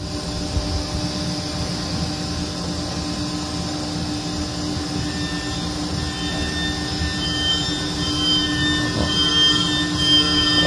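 A 6-flute ceramic end mill on an Okuma Blade T400 mill-turn machine, spinning at 18,000 rpm and dry-milling an Inconel 718 turbine blade: a steady hum with a high whine over it. A higher tone joins about halfway through, and the sound grows slightly louder near the end.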